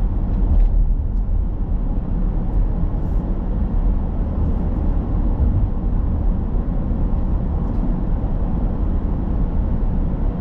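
Steady road and engine noise of a car cruising at speed, heard from inside the cabin: a constant low rumble of tyres and engine, with a few faint ticks.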